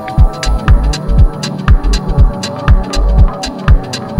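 Minimal deep house track playing: a steady kick drum about twice a second over a deep bass, with hi-hat ticks between the kicks and sustained chord tones.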